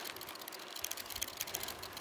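Bicycle being ridden, making faint, rapid, irregular clicking and rattling.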